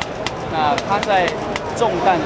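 Speech: a person talking over a steady background hubbub, with a scatter of short sharp clicks.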